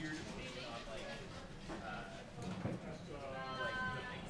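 Curlers' voices calling out on the ice, heard at a distance over the arena's background hum, with one long drawn-out shouted call near the end.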